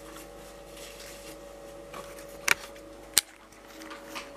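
Faint steady electrical hum, broken by two short, sharp clicks about two and a half and three seconds in.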